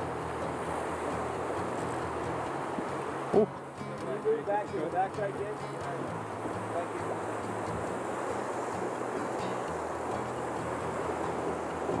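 Fast river current rushing past a drift boat, a steady noise, broken by a single sharp knock about three seconds in.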